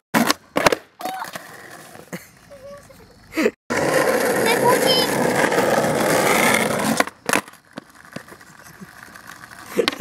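Skateboard wheels rolling over rough asphalt for about three seconds, ending in a sharp clack of the board. There are a few board clacks about a second in.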